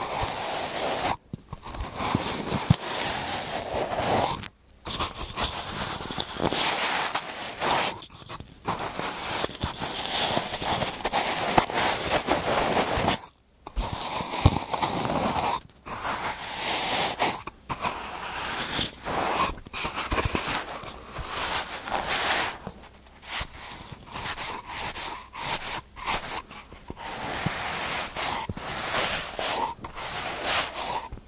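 Kinetic sand being pressed, scooped and scraped with a white plastic cylinder: dense crunching and crumbling in runs of a few seconds, broken by brief pauses.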